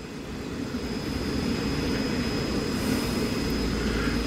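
Air stones in a fish tank bubbling hard, a steady rush of aerated water that grows a little louder, with a low rumble coming in near the end.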